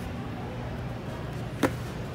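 Steady store background with a low hum, broken by a single sharp knock about a second and a half in.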